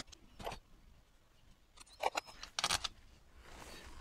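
A few faint, short metallic clicks of steel bolts being set into the bolt holes of a Honda CB125F crankcase: one about half a second in, then two louder ones about two seconds in.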